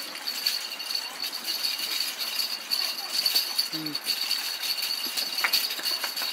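Vegetable broth boiling in an iron wok over a wood fire, a dense crackling fizz of bubbles and fire, with a steady high-pitched ringing tone above it.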